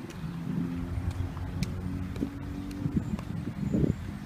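Low, steady engine hum of a car running close by, its pitch holding with small steps, and a dull thump near the end.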